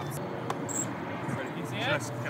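Low, steady outdoor background noise with a single click about half a second in and a short high-pitched beep just after it, then a person's voice starting briefly near the end.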